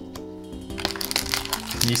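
Background music with steady held notes. From about a second in, the crinkling crackle of a foil booster-pack wrapper being handled as a pack is pulled from a display box.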